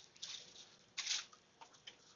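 Two faint, short rustles about a second apart, with a few small clicks, against quiet room noise.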